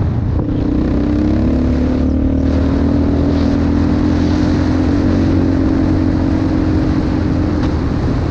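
Yamaha Raptor 700R ATV's single-cylinder four-stroke engine running under way, holding a nearly steady engine speed.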